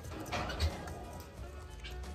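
Faint background music over a low rumble, with a few soft clicks as a Nigerian dwarf goat kid chews a copper bolus capsule held in its mouth.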